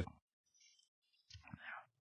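Near silence in a pause in speech, with a faint short breath about a second and a half in.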